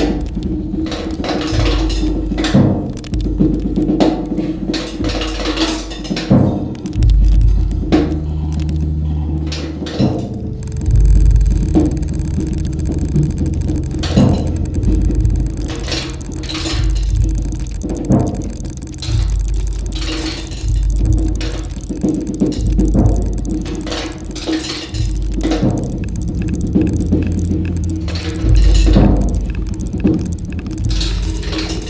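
Solo acoustic drum kit played with sticks: dense, irregular strikes on snare, toms, bass drum and cymbal, without a steady beat. Underneath runs a steady low drone with recurring low booms, and a bright hissing wash comes in about ten seconds in.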